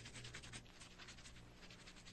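Toothbrush scrubbing teeth: faint, rapid scratchy brushing strokes, several a second.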